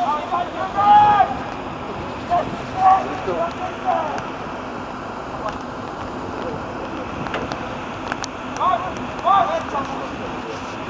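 Football players' short shouts and calls carrying across the pitch in three bursts, over a steady background hiss.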